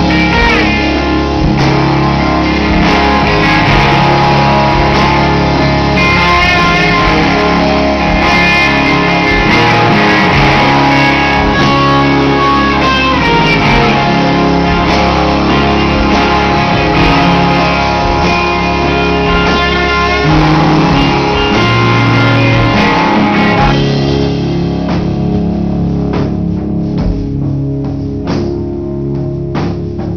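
Live rock band playing an instrumental passage on electric guitar and drums, with no vocals. The sound thins out in the treble about three quarters of the way through.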